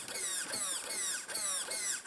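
An RC crawler's 20 kg steering servo whining as it swings the front wheels under the load of a hand pressing down on the truck. The high whine falls in pitch over and over, about three times a second.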